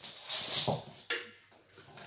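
A young child making a short breathy hissing 'whoosh' with his mouth as he waves a toy magic wand, trailing off about halfway through into a faint click.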